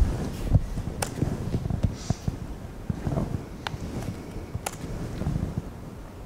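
Low rumble of room and microphone noise, broken by three sharp clicks about one, three and a half and four and a half seconds in.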